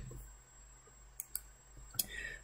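Quiet room tone broken by two sharp clicks in quick succession a little past a second in, the sound of a computer click advancing a presentation to its next slide.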